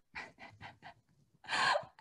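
A woman's short, breathy intake of breath about one and a half seconds in, after a few faint soft clicks.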